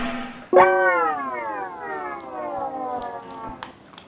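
Siren wailing: one tone that swoops up about half a second in, then winds slowly down in pitch over about three seconds and fades out.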